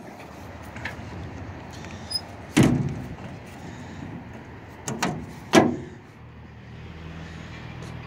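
Lid of a pickup's bed-mounted gas-tank box being handled and shut: one loud thud a little over two seconds in, then two sharper knocks about half a second apart, over a steady low hum.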